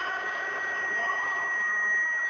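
Steady hiss with a thin, high, constant whine in a pause between spoken phrases: the background noise of an old recording.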